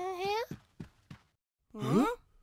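A cartoon character's voice lets out a wavering, sing-song sigh, followed by a few soft, short strokes of a broom sweeping into a dustpan. Near the end another voice glides sharply upward in pitch.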